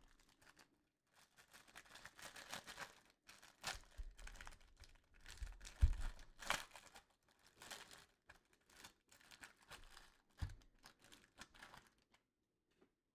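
Clear plastic wrapper of a trading-card pack being torn open and peeled off by hand, with faint, irregular crinkling and crackling. A couple of soft, low knocks come about halfway through and again near the end.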